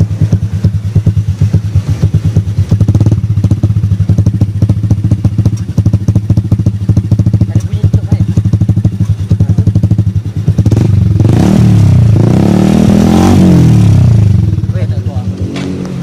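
Motorcycle engine running loud through a LeoVince carbon-fibre slip-on exhaust: a steady, fast idle putter, then revved up and back down a couple of times about ten seconds in.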